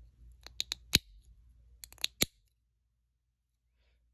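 Sharp plastic clicks from the snap-together housing of a Kenworth T680 door-bottom LED light as its clips are pressed home: a quick run of four clicks from about half a second in, the loudest near one second, then another run of four around two seconds.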